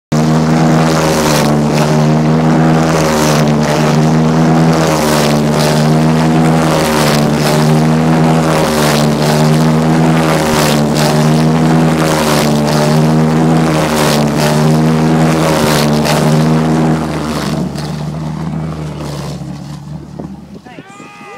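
A loud engine running at a steady speed, with a pulse about once a second over its hum; it drops away about three seconds before the end.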